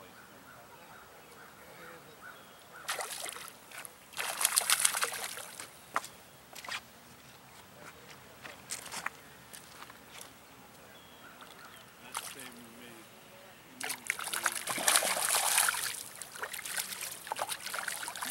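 A hooked trout splashes and thrashes at the water's surface close to the bank. There are short bursts of splashing about three to five seconds in, then a longer, louder spell from about fourteen seconds as it is brought to the landing net.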